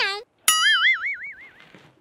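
A comic 'boing' sound effect about half a second in: a twangy tone whose pitch wobbles up and down about five times a second, fading out over roughly a second.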